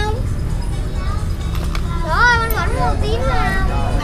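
A young child's high voice, gliding up and down in a sing-song way for about a second and a half, starting about two seconds in, over a steady low background rumble.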